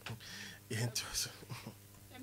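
Quiet, breathy voices close to whispering, with a short laugh near the end.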